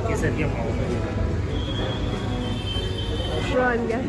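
Indistinct voices over a steady low hum, with music faintly underneath; a short stretch of speech comes near the end.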